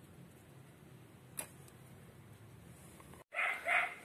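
Two short dog barks in quick succession near the end, over a quiet background with a single faint click earlier on.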